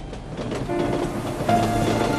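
Elevated railway train passing on its tracks, a steady rumbling noise that grows louder over the two seconds.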